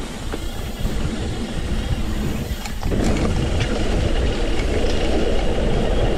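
Mountain bike rolling down a dirt trail: tyres on loose dirt, the bike rattling, and wind rushing over the camera microphone. It grows louder about three seconds in as the bike speeds up.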